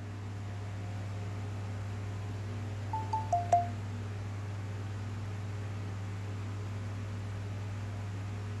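A short two-note electronic chime, the second note lower, about three seconds in, over a steady low hum.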